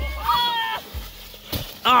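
A child's high-pitched squeal, held for under a second, shortly after the start, followed near the end by a shouted exclamation.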